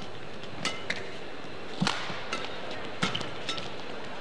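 Badminton rally: three sharp racket-on-shuttlecock hits about a second apart, with short squeaks of court shoes between shots, over a steady arena hiss.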